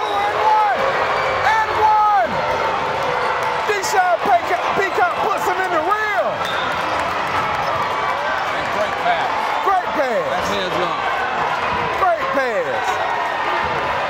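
Indoor basketball game on a hardwood court: sneakers squeaking and the ball bouncing amid a loud, continuous crowd din of shouts and cheers that never lets up.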